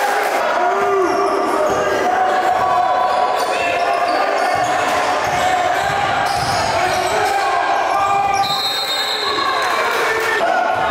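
Live basketball game in a gym: the ball bouncing on the hardwood court and sneakers squeaking, over the voices of players and spectators echoing in the hall.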